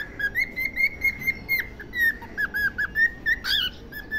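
Pet cockatiel whistling a song: a rapid run of short, clear whistled notes at much the same pitch, a few of them dipping.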